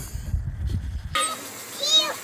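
A low rumbling noise for about the first second, which stops suddenly. Then a high-pitched voice squeals in short cries that rise and fall in pitch.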